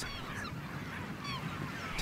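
Short, thin, falling calls of waterbirds in a nesting colony, several in quick succession, over a steady hiss.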